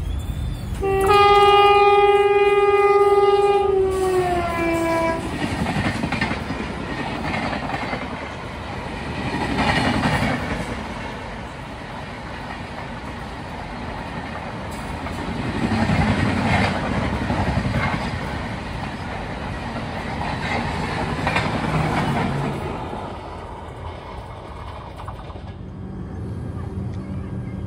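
An approaching locomotive's multi-tone horn sounds for about four seconds and drops in pitch as it ends. Then a passenger train runs past on the adjacent track, its wheels clattering over the rails in repeated swells.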